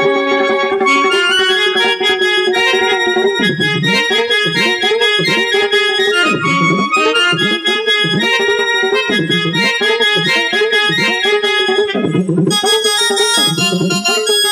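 Sambalpuri folk music: an electronic keyboard plays a sustained melody while a ghuduka, a string friction drum, sounds underneath in repeated deep swooping strokes that dip in pitch and rise again, about one a second.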